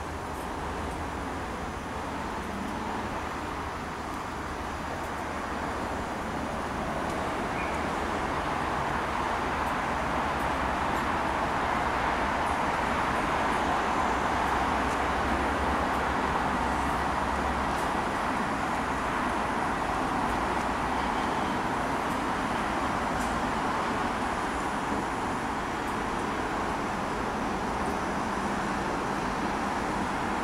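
Class 201 diesel-electric locomotive of the Enterprise train running steadily while standing at a platform, its engine noise swelling louder for a while from about six seconds in.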